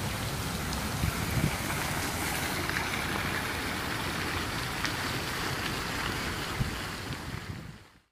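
Steady outdoor noise with wind rumbling on the microphone, fading out near the end.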